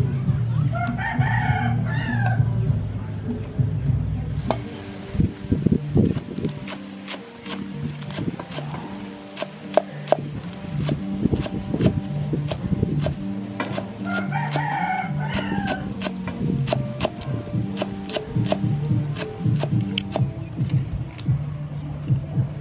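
Cleaver chopping green onions on a wooden cutting board: quick, uneven knocks from about four seconds in. A rooster crows twice, about a second in and again about fourteen seconds in.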